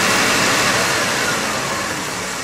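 Restored Jaguar's engine idling steadily, its level easing down slightly across the two seconds.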